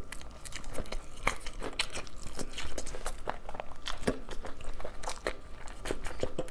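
A person chewing food close to a clip-on microphone: irregular quick clicks and crunches of biting and chewing, several a second.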